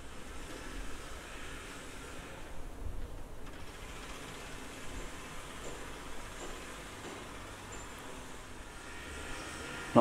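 Low, steady background noise with a faint low rumble and no distinct events: the ambient room tone of an empty building.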